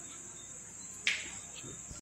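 Crickets chirping steadily in a continuous high-pitched trill, with one brief sharp sound about a second in.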